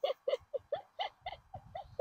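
A person laughing in a quick run of short, high-pitched giggles, about four or five a second.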